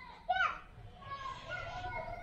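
Children's voices in the background: a short high call about a quarter of a second in, then children talking and calling faintly.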